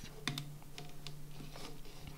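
Light, scattered clicks and soft rustling of a USB cable and its plastic micro-USB plug being handled, over a faint steady low hum.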